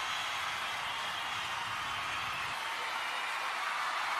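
Steady, even hiss-like noise with no tones or distinct events.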